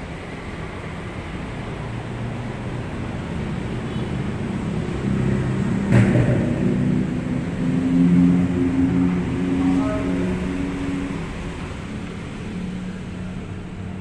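A steady low mechanical rumble and hum that swells in the middle, with a single sharp knock about six seconds in.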